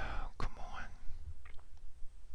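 A man's short whispered breath close to the microphone, under a second long, followed by a couple of faint clicks.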